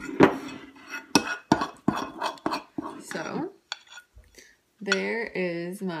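Metal spoon clinking and scraping against a ceramic bowl while stirring a thick chocolate and coconut-oil mixture: about a dozen quick clinks over the first three seconds or so, then they stop.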